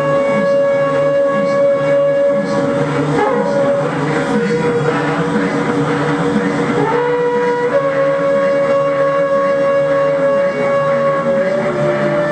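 Free-improvised experimental drone music from a trio with trumpet and battery-powered instruments: layered sustained tones over a lower buzzing drone. The main held tone drops in pitch about three seconds in and steps back up near eight seconds.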